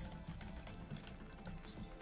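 Quiet background music from an online slot game, with soft clicks as symbols land on the grid.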